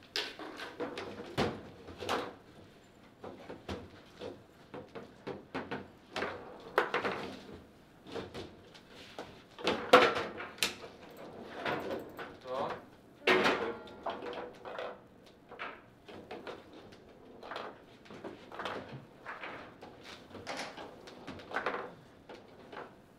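Table football being played: irregular sharp clacks and knocks of the ball struck by the rods' figures and rebounding around the table. The loudest knock comes about ten seconds in, during a rally in which a goal is scored.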